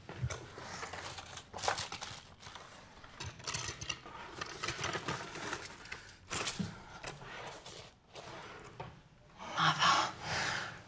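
Someone rummaging through a wooden dresser: a drawer handled and papers and small objects shuffled, in an irregular run of scrapes, rustles and light knocks.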